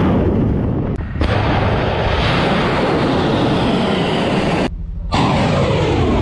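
Rocket motors of missiles launching from the Type 055 destroyer Nanchang's vertical launch cells: a loud, continuous roar. It is cut briefly about a second in and again near the end, and after the second cut the tone falls.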